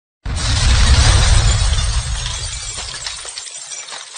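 Logo-intro sound effect: a sudden hit with a deep boom and a bright crackling wash, scattered small ticks showing through as it fades away over about four seconds.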